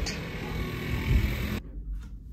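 Night city-street ambience: a steady hiss with a low rumble that swells briefly about a second in. About a second and a half in it cuts abruptly to quiet indoor room tone.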